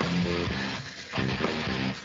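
Live rock band playing an instrumental passage, with electric guitar and drums and no singing, heard through a video call's audio with its top end cut off.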